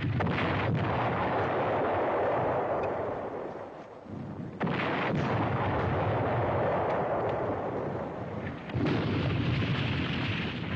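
Three shell explosions about four seconds apart, each a sudden blast followed by several seconds of rumble.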